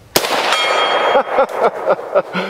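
A single rifle shot from an Arsenal SAM7SF, a 7.62×39 AK-pattern rifle. About a third of a second later a steel plate target rings from a hit, and the ring dies away within about a second.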